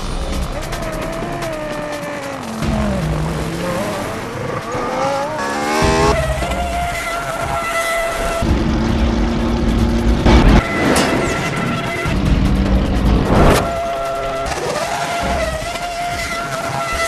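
Racing car engine sounds in a soundtrack mixed with music: an engine revs up rising in pitch, then two sharp loud surges like cars going by.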